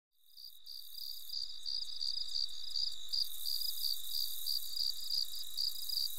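Crickets chirping: a steady high trill with regular pulsed chirps about three times a second, fading in over the first second.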